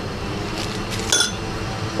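Small glass spice jars clinking lightly: two short clinks about half a second apart, the second ringing briefly.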